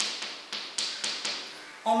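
Chalk writing on a blackboard: four or five short, sharp taps as the chalk strikes the board, each dying away quickly, over the first second or so.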